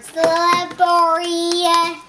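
A young boy's voice in a drawn-out, sing-song delivery: a short phrase, then a longer one that ends on a long held note.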